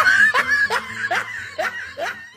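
A person laughing in a quick string of short 'ha' sounds that grows fainter.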